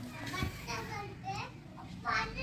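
Children's voices chattering in the background, with a single low thump about half a second in.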